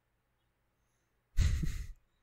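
A man breathes out once, sharply, close to the microphone about a second and a half in: a short huff lasting about half a second, strongest at its start.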